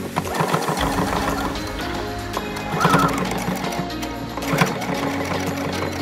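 Electric sewing machine stitching through denim, the needle running in a rapid, steady rhythm, over background music.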